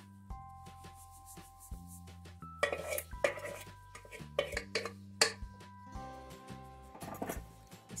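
A utensil scraping and knocking against a metal bowl and a stainless steel baking pan as a mayonnaise marinade is spread over chicken and potatoes, with sharp knocks a few seconds in and again later. Background music of held notes plays throughout.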